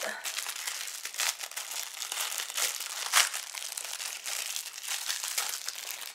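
Plastic packaging of a urine sample cup crinkling and crackling in the hands as it is handled and opened: a dense, continuous run of crackles with a sharper crackle about three seconds in.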